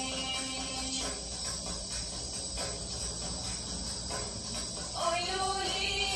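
Recorded Albanian folk song: girls' voices singing with def frame-drum accompaniment. The voices drop out about a second in, leaving the drum beating with its jingles, and the singing comes back near the end.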